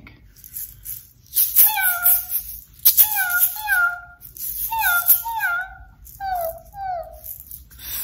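A woman imitating a tiny kitten: a string of about nine short, high mews, each falling in pitch, mixed with quick rattles of hand shakers shaken like a cat would.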